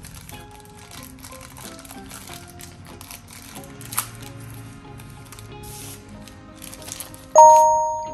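Soft background music with faint rustling of tissue paper and a single click about halfway. Near the end comes a loud electronic chime sound effect marking a subscribe reminder: a few clear tones that start suddenly and fade away over about a second.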